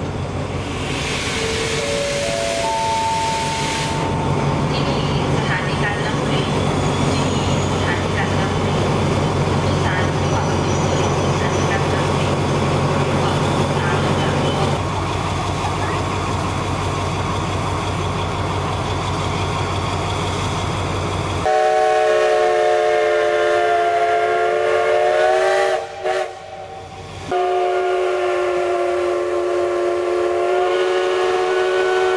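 A steady low engine hum, then, about two-thirds of the way through, a steam locomotive's whistle blows a long multi-tone blast, breaks off for about a second, and sounds again near the end.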